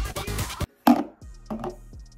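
Background music cuts off, then a sharp knock just under a second in, followed by a couple of lighter knocks.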